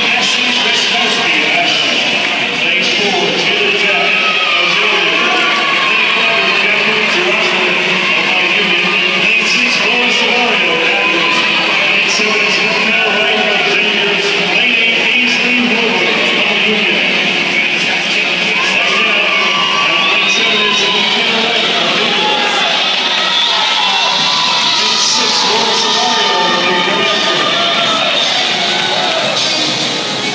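Music with guitar plays steadily under a crowd's voices and cheering in an indoor pool hall during a swimming race.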